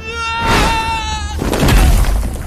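Animated-fantasy sound effects: a steady, high buzzing whine for about a second and a half, then a heavy whooshing impact near the end as a robed figure slams into the ground.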